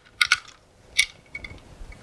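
Plastic battery holder of a VM-850 locator receiver, loaded with two D-cell batteries, handled as it is fitted back in: a few light clicks and clinks, with a sharper click about a second in.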